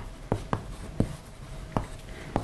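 Chalk writing on a blackboard: a string of sharp, irregular taps as the chalk strikes and drags through each stroke, about five in two seconds.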